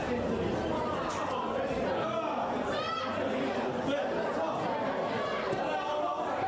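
Indistinct chatter of many voices talking at once, with no single clear speaker.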